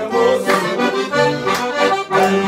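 Two accordions playing a traditional Portuguese dance tune together, melody over a bass line.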